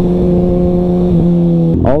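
Sport bike's inline-four engine running at a steady cruising pitch, which dips slightly just past a second in, with wind noise on the bike-mounted microphone.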